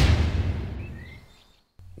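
A whoosh transition sound effect: a rush of noise that swells, peaks and then fades away over about a second and a half.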